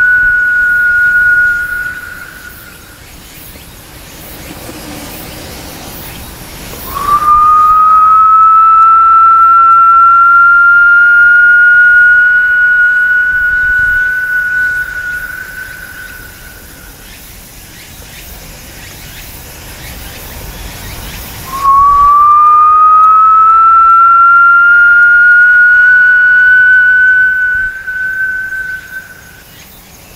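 Long, loud, high whistle-like notes, each held for several seconds with its pitch creeping slowly upward. One fades out about two seconds in, a second starts about seven seconds in, and a third starts about twenty-one seconds in, each lasting around eight seconds.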